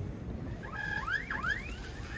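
Airport terminal hall ambience: a steady low background hum, with a few short rising squeaks or chirps from about a second in.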